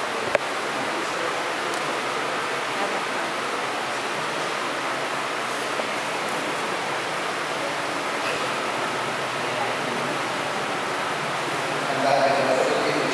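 Steady, even hiss of church room noise, with one sharp click near the start.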